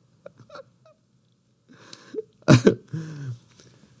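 A man laughing: a soft breath, then a sudden loud burst of breath about halfway through, followed by a short voiced laugh that falls in pitch.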